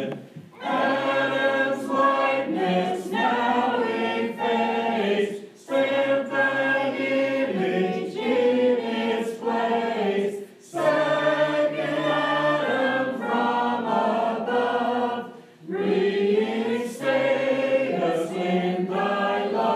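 Small mixed choir of men's, women's and children's voices singing a hymn. The singing comes in long phrases with a short breath pause about every five seconds.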